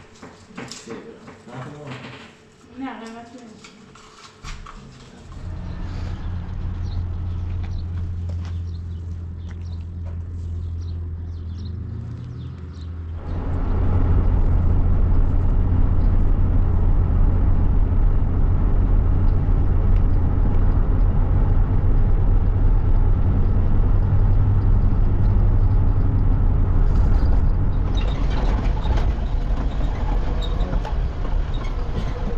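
A vehicle driving, heard from on board: a steady low engine and road rumble sets in about five seconds in and grows clearly louder about thirteen seconds in. Before it, a few light clicks and knocks.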